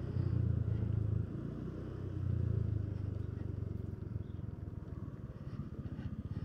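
Motorcycle engine running at low speed during a slow U-turn: a low steady hum that swells twice, with even firing pulses heard through the second half.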